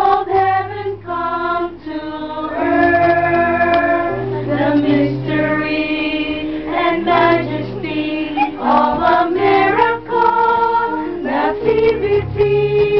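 A small choir of women and men singing a song in harmony, several voices holding notes together.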